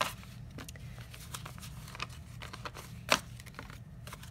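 Paper banknotes being handled and laid down on a table in stacks: soft rustling and light flicks of bills, with one sharp snap about three seconds in.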